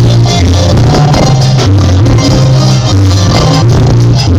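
Cumbia band playing an instrumental passage: a bass line moving between notes under keyboards and hand percussion, with a steady, even beat.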